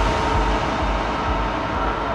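Electronic dance music from a festival DJ set, in a passage of held synth chords over a dense wash of noise with no strong beat, slowly getting quieter.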